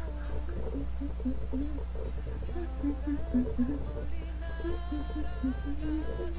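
A woman humming a pop tune in short notes that step up and down, fuller near the end, over a steady low hum.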